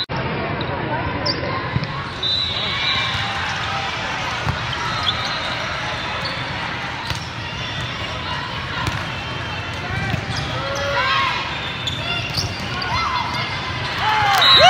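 Steady babble of many voices from players and spectators in a large volleyball hall, crossed by sharp thumps of volleyballs being served, set and hit. Louder calls and shouts from players stand out near the end.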